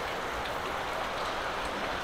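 Rain pouring steadily, with runoff water splashing down from a leaky, crooked piece of gutter.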